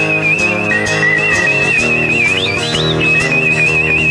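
Blues-rock band instrumental break: an electric guitar plays a high lead of long, wavering, bent notes with quick upward slides near the middle, over a steady band backing with drums.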